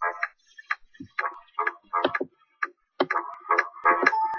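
A woman's short, rhythmic mouth sounds, about two or three a second, keeping the beat of the song between sung lines.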